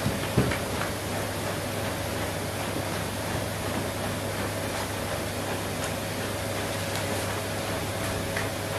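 Steady background hum and hiss of workshop room noise, with a couple of light knocks about half a second in.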